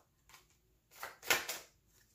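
Tarot cards being handled and turned over on a table: a few brief soft taps and rustles, the loudest about halfway through.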